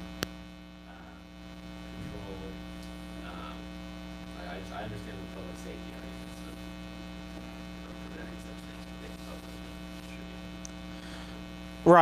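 Steady electrical mains hum with many overtones, under the faint, distant voice of an audience member asking a question. A single sharp click comes just after the start.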